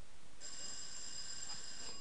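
Electric quiz bell ringing steadily for about a second and a half, starting about half a second in: a contestant ringing in to answer.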